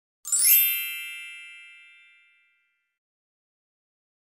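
A single bright chime, a ding that rings out and fades away over about two seconds.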